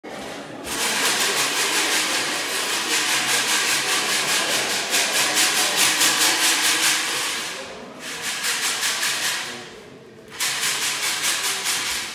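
Loud shaken rattling hiss from handheld performance props: a metal cylinder, then a round drum-like object. It pulses several times a second, drops away about eight seconds in, and comes back just after ten seconds.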